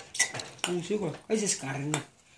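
Dishes and cutlery clinking a few times, with a person's voice sounding in between.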